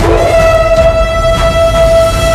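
Loud dramatic background music that has just come in abruptly: one long held high note over a driving low rhythm.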